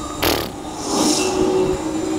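Film trailer sound effects: a sharp whoosh about a quarter second in and a softer swoosh about a second in, over a steady low drone.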